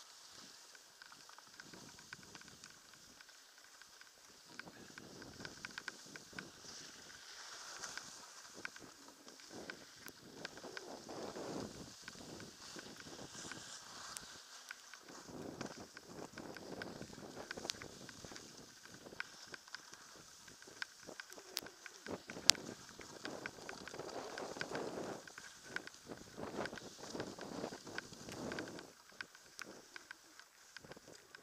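Skis sliding and carving over snow: a hiss that swells and fades with each turn, several seconds apart. Scattered sharp clicks run through it, the loudest a little past the middle.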